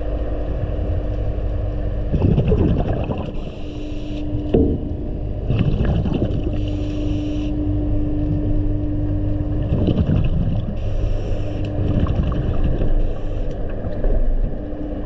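Underwater sound: a steady low rumble with a constant hum, broken about every three to four seconds by a short burst of hissing bubbles, typical of a diver exhaling through the breathing gear. A few faint knocks come in between.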